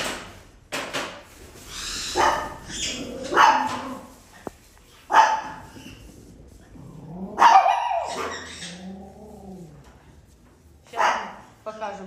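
A dog barking repeatedly, single sharp barks a second or two apart, one with a drawn-out whining tail.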